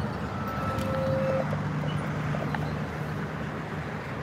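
A fire engine's diesel engine running with a steady low drone as the truck moves slowly along the street, with a car passing close by.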